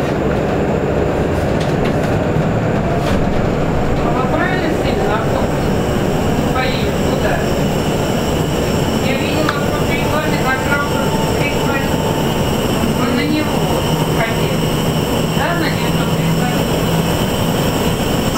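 Cabin noise of a KAMAZ-6282 electric bus under way: a steady rush of road and tyre noise with the faint whine of its electric drive. A low hum holds steady for a few seconds near the end.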